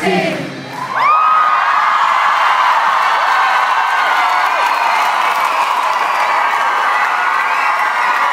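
A concert crowd screaming and cheering as the band's music stops about a second in. Many high-pitched screams rise above the steady crowd noise.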